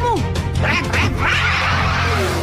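Action background music with a loud, raspy, screeching creature cry sound effect lasting about a second, starting about half a second in.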